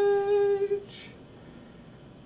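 A man humming a single held note, which breaks off under a second in, followed by a short hiss.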